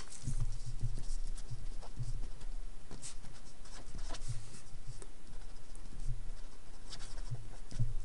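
Pen writing on paper: a run of short, irregular strokes as numbers and a word are written out.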